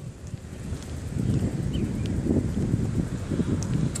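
Wind buffeting a phone's microphone while cycling: an irregular low rumble that grows louder about a second in.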